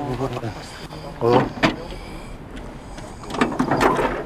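Men's voices in short spoken bursts, with a couple of sharp clicks or knocks as a van's bonnet is unlatched and raised.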